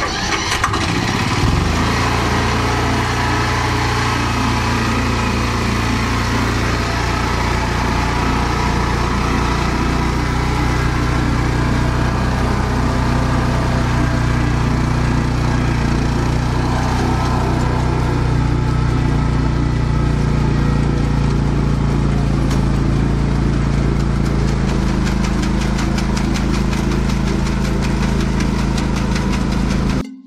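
Engine of a Mitsubishi LKV6 paper-mulch rice transplanter, rising in speed about a second in, then running steadily under load as the machine plants.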